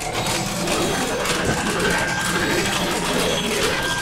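Cartoon electrical arcing effect: a dense, continuous crackle of sparks over a thin steady high whine, dying away just after the end.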